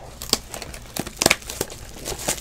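Trading-card pack wrapper crinkling and tearing in the hands as packs are handled and opened, in a few short sharp crackles, the loudest a little past the middle.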